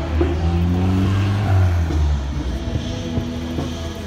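Amplified live band music heard at a distance outdoors, dominated by a deep low rumble of bass with held notes above it that shift every second or so.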